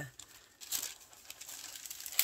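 Faint rustle of the clear plastic protective film over a diamond painting canvas being handled, with one short crinkly swish a little under a second in.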